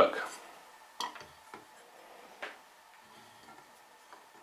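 A few light clicks and taps of hand tools being handled on a wooden workbench, the sharpest about a second in and two fainter ones after it.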